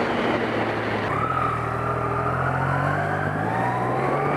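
Motorcycle engine under acceleration, its pitch climbing steadily from about a second in, over the rush of wind on an action camera's built-in microphone.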